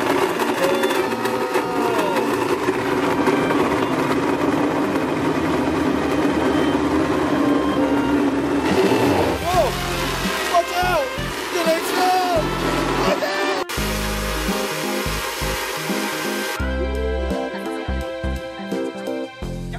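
Blendtec Total Blender running its preset smoothie cycle, its motor blending frozen strawberries, banana, milk and yogurt with a steady whir whose pitch slowly drops. Background music with a beat comes in about halfway and carries the rest.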